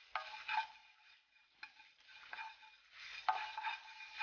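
Wooden spatula stirring and scraping spices being roasted in a pan: coriander seeds, dal, dried red chillies and curry leaves. It comes as faint short bursts of rustling with a few clicks and quiet pauses between them.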